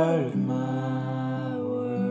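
Worship song: a singer holds one long note, sliding down in pitch just after the start and then held steady, over a sustained chord.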